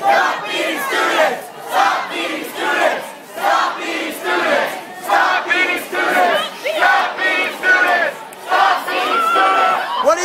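Large protest crowd shouting together in a repeated rhythmic chant, about two loud shouts a second from many voices.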